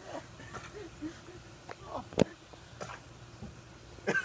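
Faint, brief murmured voices, with one sharp click a little over two seconds in.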